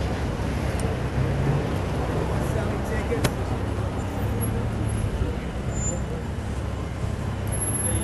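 Taxi engine running at low speed as the car moves slowly forward along the curb, over a steady rumble of city street traffic. A single sharp click sounds about three seconds in.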